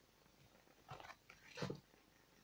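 Mostly near silence, with two faint soft handling sounds about a second in and shortly after: a tarot card being brought over and laid down on a wooden table.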